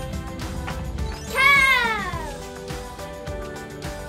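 A cat's meow, one long call that rises briefly and then falls in pitch, about a second and a half in, over background music.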